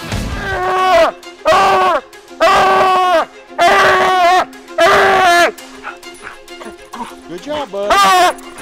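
Coonhound baying treed at the base of a tree, five long bawls about a second apart, each falling in pitch at its end, followed by shorter, quieter barks.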